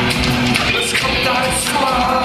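Live rock band playing: electric guitars, bass guitar and drums at full volume, with a male voice singing over them from about a third of the way in.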